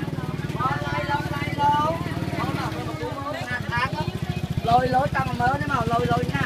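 A small engine running with a steady low pulse, its pitch dipping briefly midway, under people talking.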